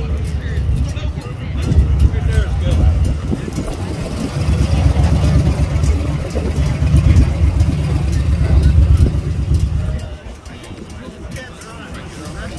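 A V-twin touring motorcycle's engine running loud and deep, swelling in two long surges as it is revved, then dropping away about ten seconds in. People talk in the background.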